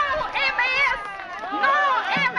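People talking; their words are not made out.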